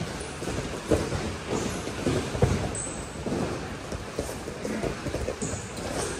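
Many pairs of youth wrestlers drilling takedowns on gym mats: a steady jumble of scuffling and thuds on the mat in a large echoing hall, with a couple of short high squeaks.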